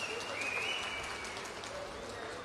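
A large crowd applauding, a steady spread of fairly faint clapping, with a thin high tone sounding over it for the first second and a half.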